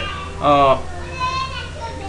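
Brief, quiet speech: one short spoken syllable, then fainter voice sounds, over a steady low hum.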